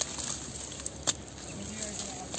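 Small metal hand trowel digging into dry, lumpy soil around spring onion roots. There are sharp clicks as the blade strikes the ground, one right at the start and one about a second in, with scraping and crumbling between.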